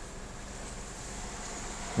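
Faint, steady hum and hiss of a car's cabin while it waits in traffic, with a low engine rumble underneath.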